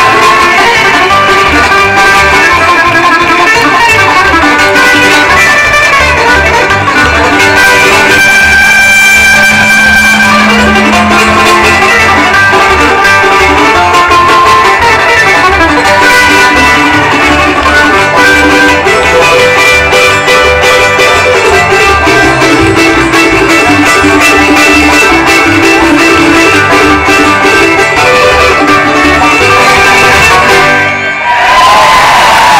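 Live bluegrass band playing: fiddle, mandolin, five-string banjo, acoustic guitar and upright bass together over a steady beat.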